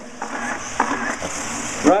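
1/8-scale off-road RC buggies running around an indoor dirt track, heard as a steady rushing noise echoing in the hall. The noise cuts off suddenly near the end.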